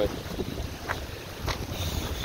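Small lake waves lapping on a pebbly shore, with a few short splashes, under wind rumbling on the microphone.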